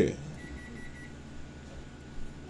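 A faint, thin electronic beep held for about half a second, under a low steady room hum.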